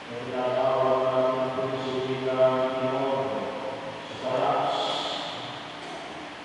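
A man's voice chanting a sung prayer of the Catholic Mass into a microphone, in long held notes: one long phrase, a brief pause, then a second phrase about four seconds in.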